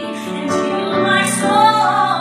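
A woman singing a slow gospel song with piano accompaniment, her voice swelling louder about a second in.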